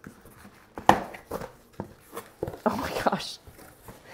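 A cardboard shipping box being handled and its flaps pulled open: a few sharp taps and knocks, the loudest about a second in, then scraping and rustling of cardboard near three seconds.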